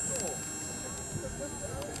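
Voices of people talking in the background, with a faint steady high-pitched whine underneath.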